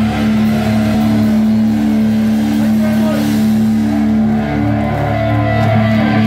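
Live rock band with distorted electric guitar and bass holding a low droning chord, with a pulsing note and sliding, bending pitches over it and little drumming.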